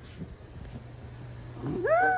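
A dog's "woo": a single howl-like vocal call given on command, which starts near the end and rises steeply in pitch.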